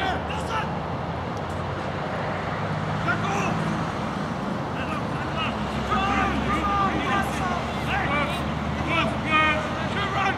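Rugby players shouting and calling to each other on the pitch, with several shouts from about six seconds in, over a steady low rumble.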